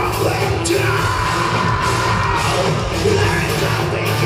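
Folk metal band playing live, with guitars and drums under a shouted vocal, heard from the crowd.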